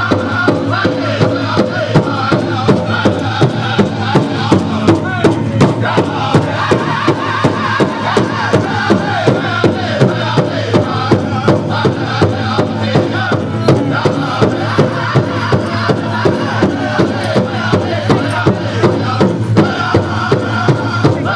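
Powwow drum group: several singers chanting a contest song over a big drum struck in a steady unison beat, a little more than two beats a second.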